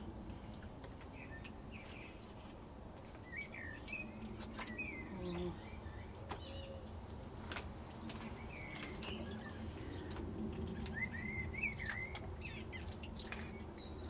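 Wild birds singing faintly: scattered short chirps and warbled phrases, with a run of notes near the end.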